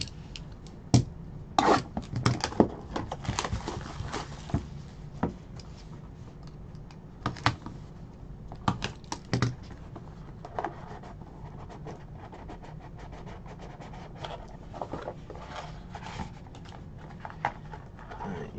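A cardboard trading-card box handled and opened by hand: irregular crinkles, scrapes and clicks of wrapping and card stock, busiest in the first few seconds and again around the middle.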